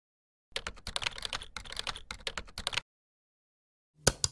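Computer keyboard typing, a quick run of keystrokes of about eight a second lasting just over two seconds, then silence.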